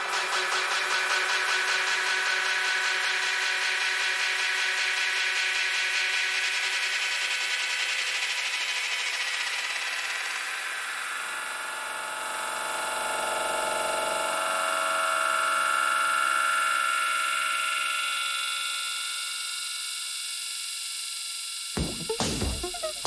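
Electro track in a breakdown, played through a club sound system: kick drum and bass are gone, leaving sustained, buzzing synth tones and noise. The sound pulses fast in the first half, swells about two-thirds of the way in and thins out, and the beat comes back in at the very end.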